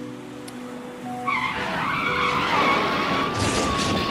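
Vehicle tyres screeching in a hard skid under sudden braking. The squeal starts about a second in and holds steady, with background music underneath.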